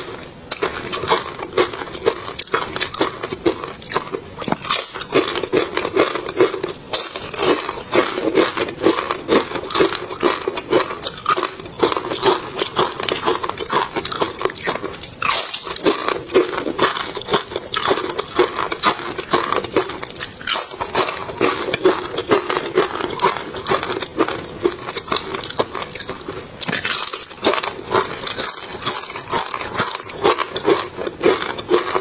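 Close-miked eating: continuous chewing and crunching of food, with sharp crunches and mouth clicks several times a second.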